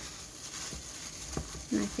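Disposable plastic gloves crinkling and rubbing against raw chicken as hands work a yogurt-and-spice marinade into it in a plastic bowl, with a couple of faint knocks; a woman says one short word near the end.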